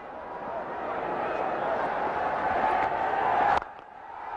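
Stadium crowd cheering, swelling steadily louder over about three and a half seconds as the ball runs to the boundary, then cutting off suddenly.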